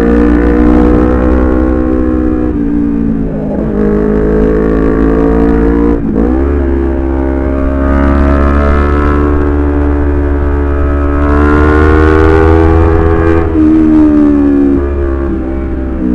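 Honda CBR250RR's parallel-twin engine running under way through a series of bends, its pitch dropping and climbing again a few times as the throttle is eased and reopened. A steady deep wind rumble on the microphone runs underneath.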